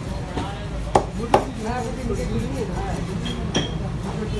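Heavy knife chopping fish on a wooden stump block: two sharp chops about a second in and a lighter knock later.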